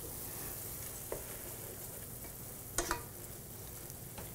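Ground beef sizzling in a skillet as it is stirred with a wooden spoon, a faint steady hiss, with two light clicks of a utensil about a second and about three seconds in.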